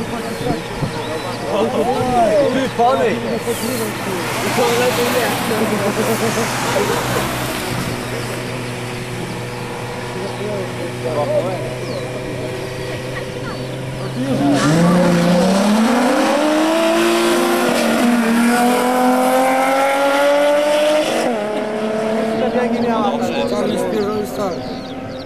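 Two Mk2 VW Golf engines idling at the drag-race start line, then launching together about halfway through: the engine note climbs steeply, drops at a gear change, climbs again and drops at a second shift near the end as the cars accelerate away.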